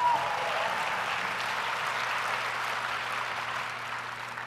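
Audience applauding a line in a speech, the clapping fading away toward the end.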